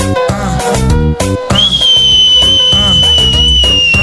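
Dance music from a live DJ set, with a steady pounding beat. About one and a half seconds in, a long high whistle enters and holds, sinking slightly in pitch.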